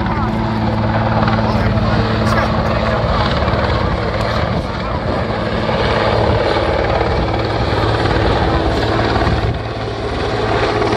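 Finnish Border Guard helicopter running steadily overhead as it carries an underslung van, its rotor and turbine making a loud, even drone with a low steady hum.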